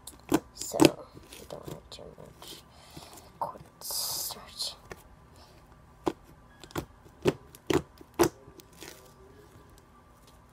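Butter slime worked by hand: it is poked and stretched, giving short sharp pops and clicks, about two a second in the second half, with a brief hiss about four seconds in.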